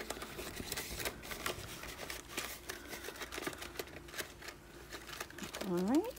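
Paper banknotes and a paper envelope rustling with small crisp clicks as cash is handled and slipped into a binder envelope. A short rising tone near the end is the loudest moment.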